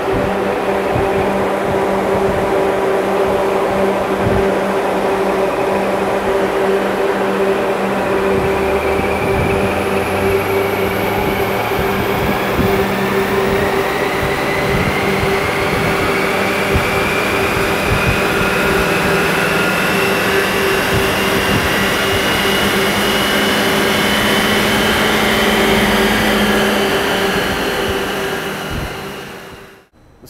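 Ford Fiesta ST's turbocharged 1.6-litre four-cylinder, on its stock tune, making a full-throttle pull on a chassis dyno over a steady loud hum. Its whine climbs slowly in pitch from about a third of the way in, then the sound fades out near the end.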